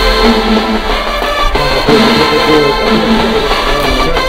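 HBCU marching band playing a stand tune: the brass section and sousaphones play a loud melody in sustained notes.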